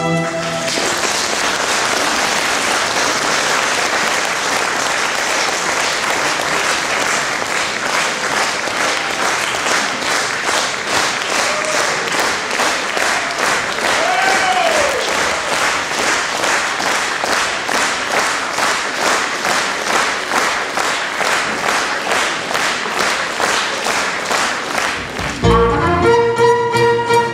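Concert audience applauding after a piece; the clapping settles into a steady beat in unison. Near the end the ensemble starts the next piece.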